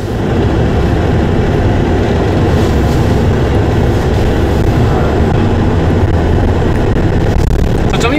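Steady low rumble of a Ford F-250 Super Duty pickup on the move, heard from inside the cab: road and tyre noise with the drivetrain running underneath.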